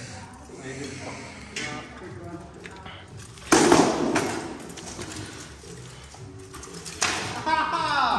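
Armoured sword sparring: one loud clash of a sword strike landing, about halfway through, that rings on for about half a second, with faint talk around it.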